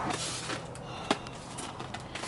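Styrofoam packing and a cardboard box being handled as a light fixture is pulled out: faint rubbing and rustling with a few small clicks, the sharpest about a second in.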